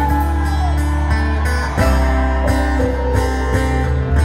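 Live rock band playing an instrumental passage, electric guitars ringing over a steady bass line.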